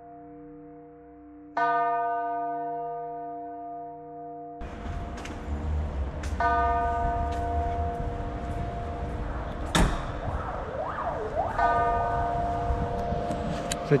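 A bell struck about every five seconds, each strike ringing on and slowly dying away. From about four and a half seconds in, steady outdoor noise lies under it, with a sharp knock near ten seconds.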